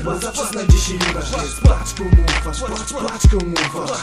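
Hip hop track: a beat of heavy kick drums over a deep sustained bass, with a rapped vocal hook over it.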